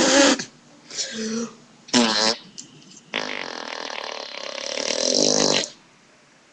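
A boy making fart noises with his mouth: three short blown raspberries, then one long one of about two and a half seconds.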